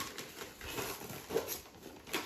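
Wrapping paper and tissue paper rustling and crinkling faintly as a present is torn open by hand.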